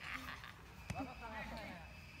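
Faint, distant voices of people talking and calling, with a single sharp click a little under a second in.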